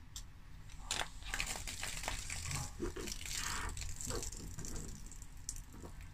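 Foil wrapper on a bottle neck crinkling and tearing as it is stripped off, with short clicks and crackles of handling as the metal opener works at the bottle top.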